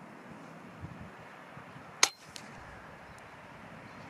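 A single shot from a sub-12 ft-lb air rifle about two seconds in: one sharp crack, followed by a fainter knock about a third of a second later.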